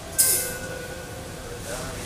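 Subway car standing at a station: a sudden burst of air hiss about a quarter second in, fading within half a second, over faint steady tones from the car's equipment.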